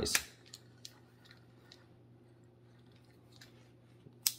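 A few faint, irregular clicks from an NGT Camo40 baitrunner spinning reel being worked by hand as its crank handle is turned.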